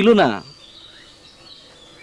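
A man's voice ends half a second in. Quiet outdoor background follows, with a faint, thin, high-pitched call drawn out over about a second.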